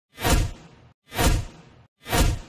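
Countdown whoosh sound effect repeating about once a second: two swooshes, each swelling quickly and then fading away, with a short gap of silence between them.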